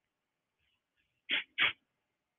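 Near silence, then two quick, short non-word vocal sounds from a man about a second and a half in.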